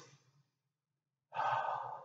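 A person's audible breath out, a sigh-like exhale that starts a little past halfway in and fades by the end.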